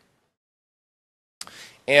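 Dead silence for about a second and a half, then a short faint noise and a man's voice starting to speak at the very end.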